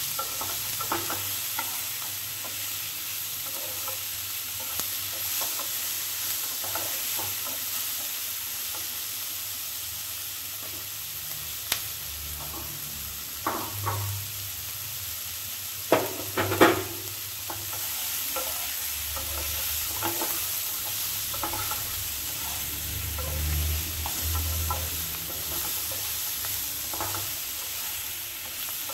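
Chopped onion, tomato and cashews sizzling steadily as they fry in a non-stick pan, with a spatula stirring them. A few sharp knocks of the spatula against the pan, mostly around the middle.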